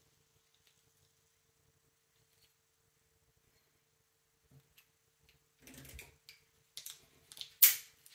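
Near silence for the first half. Then climbing hardware and rope are handled, with soft rustles and light metal clicks, and a single sharp click near the end as a carabiner is clipped onto the pulley and hitch cord.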